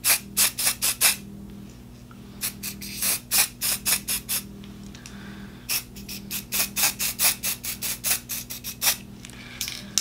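Aerosol can of white colour hairspray sprayed onto hair in many short, quick puffs. The puffs come in three runs with short pauses between them.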